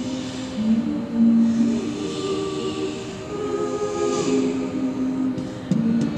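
Women's a cappella group singing held close-harmony chords that shift every second or so, with a higher voice carrying a line above that slides down about four seconds in.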